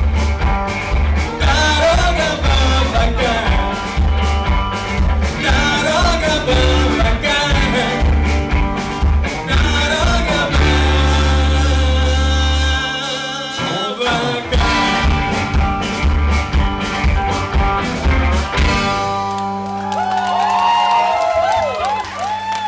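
Live rock-and-roll band playing through a club PA: electric guitars, bass guitar and drums with a steady driving beat and a singer at times. The beat breaks off briefly about two-thirds through, and near the end the drums drop out, leaving wavering, bending high notes.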